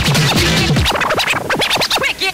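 Early-1990s rave DJ mix: fast electronic dance music with turntable scratching. About a second in, the beat thins out, leaving quick scratches that sweep up and down in pitch.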